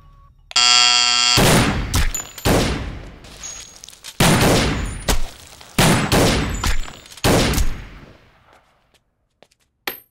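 An electric doorbell buzzes for just under a second, then about eight pistol shots follow at uneven gaps over the next seven seconds, each ringing out as it fades. A sharp click comes near the end.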